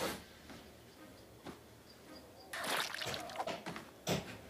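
Cartoon sound effects of a canvas duffel bag being stuffed and cinched: faint rustling, then a burst of rustling and scraping that starts about two and a half seconds in and lasts over a second.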